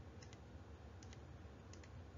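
A few faint computer clicks, in short pairs, over near silence.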